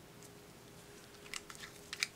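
Quiet room tone with a faint steady hum, and a few soft clicks about a second and a half in.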